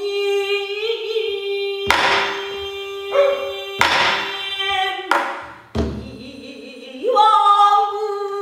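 A female pansori singer holds long, wavering sung notes, accompanied by a buk barrel drum. The drum is struck several times, at roughly two-second intervals; the last stroke, about six seconds in, is deep.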